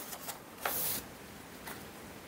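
A paper page of a comic book turned over by hand: a brief rustling swish about half a second in, with faint paper ticks around it.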